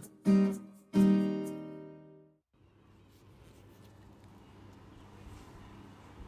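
Background music: strummed acoustic guitar chords, the last one ringing out and cut off about two and a half seconds in, followed by faint room tone.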